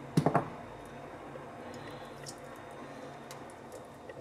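Soft, wet squishes and small clicks of pieces of boiled chicken meat being handled and dropped into a glass blender jar, with a brief louder pitched sound just after the start.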